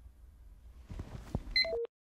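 Faint room tone with a few soft clicks, then a quick falling run of short electronic beeps that cuts off suddenly into silence as the recording ends.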